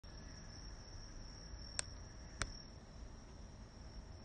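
Crickets trilling steadily in a high, continuous band. Two sharp clicks a little over half a second apart come near the middle.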